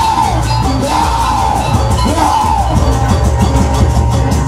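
Loud live jaranan music: driving drums struck in a steady rhythm, with a high melody line that bends up and down above them.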